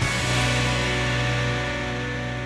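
Game-show transition sting: a held musical chord with a deep bass note, struck at the start and slowly fading.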